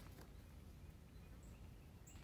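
Near silence: faint outdoor background with a low steady rumble.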